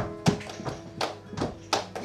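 Flamenco palmas: several performers clapping sharp hand claps in rhythm over a flamenco guitar's ringing notes.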